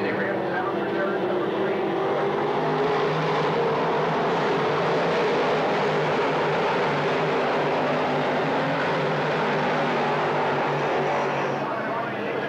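A pack of dirt modified race cars' V8 engines running at racing speed: a loud, steady drone from the field on the track.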